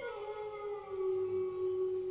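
A long howl-like tone that dips slightly in pitch at first, then holds steady on one note.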